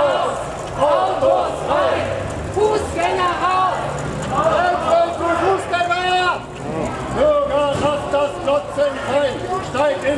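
Several demonstrators' voices chanting and calling out slogans, with one long held shout about seven seconds in.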